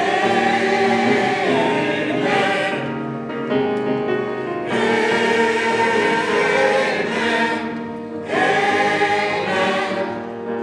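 A mixed church choir of men's and women's voices singing, in sustained phrases that begin anew about two and a half, five and eight seconds in.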